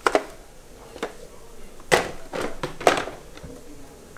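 A few sharp knocks and rustles from a robot vacuum being handled while a cloth caught in its brush roll is pulled free. Two come right at the start and one about a second in, with the loudest about two and three seconds in.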